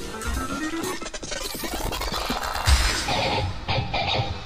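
Live band music on electric guitars, dense and noisy with sharp strokes throughout, as the band plays on at the end of a song.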